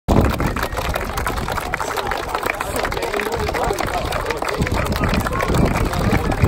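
A crowd of children clapping steadily and unevenly, with their voices calling out and chattering over the claps.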